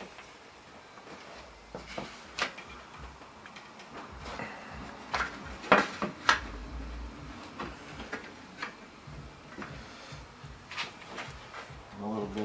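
Scattered light clicks and knocks as glued wooden frame rails and a framing clamp's plastic corner blocks are shifted and set into place on a workbench, about a dozen irregular taps with the sharpest about halfway through.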